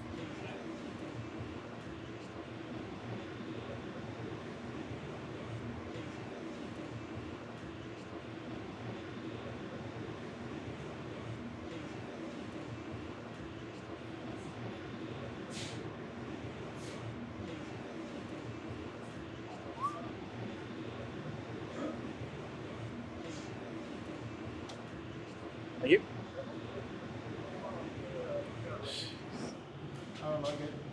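Steady machinery and ventilation hum of a large factory hall, with scattered faint clicks and distant voices. About 26 seconds in there is one brief, sharp sound that stands out above the hum.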